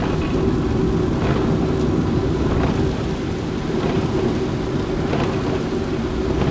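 Steady low rumble of a car driving on a wet road in rain, heard inside the cabin, with rain on the car.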